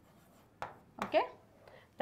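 Marker writing on a board, with one short sharp stroke about half a second in, then a single spoken word.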